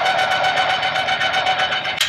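Electric tongue jack on a travel trailer running, lowering the coupler onto the hitch ball: a steady motor whine at one pitch with a fast, even chatter of clicks.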